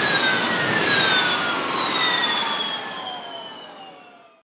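Formula E electric race car passing at speed on a wet track. The high whine of its electric drivetrain falls slowly and steadily in pitch as it goes by and away, over the hiss of its tyres through the water, and fades near the end.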